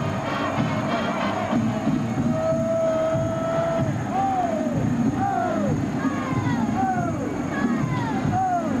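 Stadium crowd noise with a band playing over it after a touchdown: one long held note, then several short notes that slide downward.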